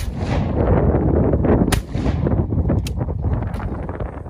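Two shotgun shots fired less than two seconds apart, each a sharp report with a short ringing tail, followed by two fainter sharp cracks near the end. Wind buffets the microphone throughout.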